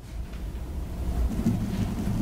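Low rumbling noise on the room microphones during a pause in speech, with a faint low murmur in the last half second.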